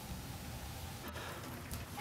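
Faint, steady outdoor background noise with no distinct event, only a soft click about a second in.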